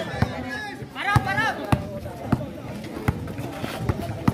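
A basketball is dribbled on an outdoor concrete court, bouncing roughly every half second. A brief shout comes about a second in, over voices from the crowd.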